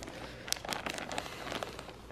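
Soft, scattered crinkles and crackles of a clear plastic zip-top bag being handled and pulled open.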